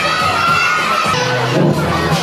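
A crowd of young children shouting and cheering, with music playing underneath.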